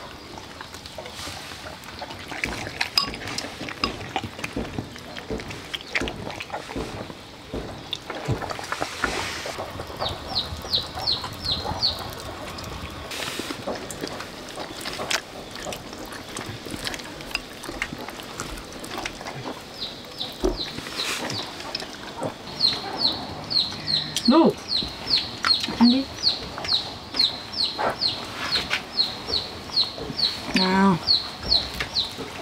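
Chickens peeping: rapid runs of short high notes, about three a second, briefly around ten seconds in and steadily through the last third, with a few lower calls near the end. Scattered light clicks of chopsticks against a bowl.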